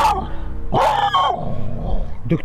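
Belgian Malinois dog yelping twice, about a second apart, with steady background music underneath.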